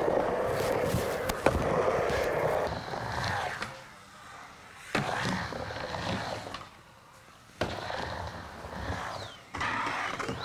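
Skateboard wheels rolling on a wooden vert ramp, with a sharp clack about a second and a half in. The rolling fades about four seconds in, and sudden board knocks break in near five seconds and again between seven and eight seconds.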